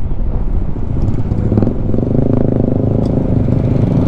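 Riding on a Honda scooter in traffic: wind rumble on the microphone over a steady motorcycle engine hum, the engine tone coming through more clearly about a second and a half in.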